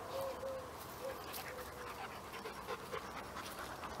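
A dog panting faintly, with a string of short, soft tones spread through the few seconds.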